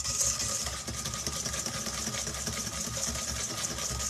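Wire balloon whisk beating egg yolks and sugar in a stainless steel bowl: a rapid, steady clatter of the wires against the metal.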